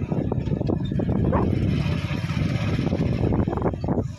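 A two-wheeler being ridden: a steady low rumble of engine and road noise.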